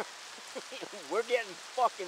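Steady rain falling, a soft even hiss under a man's laughter.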